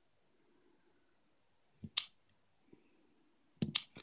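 Near silence broken by one short, sharp click about halfway through, followed by a few brief faint sounds near the end.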